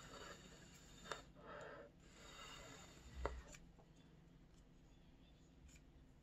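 Faint rustling of folded colored paper being handled and pressed together with the fingers, with a couple of soft clicks. The sharpest click comes a little over three seconds in.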